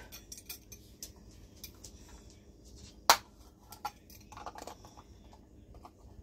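Light clicks and clinks of kitchen utensils and ingredient containers being handled, with one sharp knock about three seconds in.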